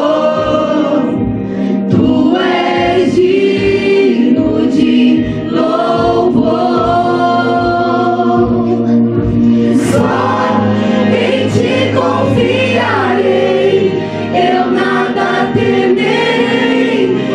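A group of children and teenagers singing a Christian worship song together, their voices amplified through handheld microphones.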